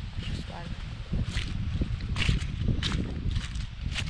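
Wind buffeting the action camera's microphone: a steady low rumble, with scattered short crackles over it.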